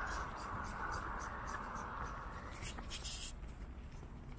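Scratchy rustling and handling noise from a handheld phone microphone rubbing against clothing, a steady hiss fading over the first few seconds and a short burst of hiss about three seconds in.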